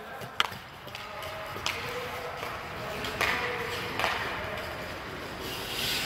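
A hockey stick knocking a puck a few times, sharp clicks spaced a second or more apart, with ice skate blades scraping on the rink ice between them.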